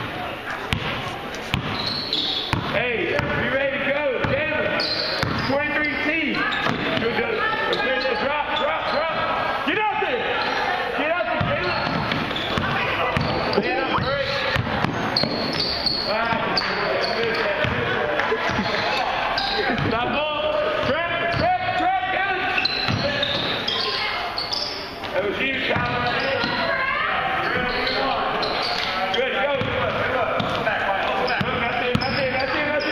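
A basketball bouncing on a hardwood gym floor during play, amid many overlapping voices talking and calling out in a large gym hall.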